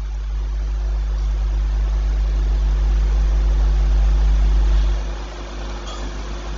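Loud electrical mains hum in the audio chain: a deep steady buzz with fainter steady hum tones above it and an even hiss, easing a little near the end.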